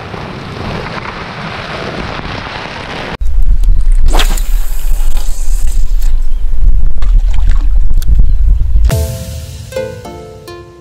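Rushing storm wind on the microphone, cut off abruptly by a sudden, very loud deep rumble with a sweeping whoosh, which lasts about six seconds. Bright plucked ukulele music starts near the end.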